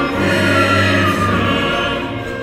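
Symphony orchestra and choir performing together, holding full sustained chords over a low bass note.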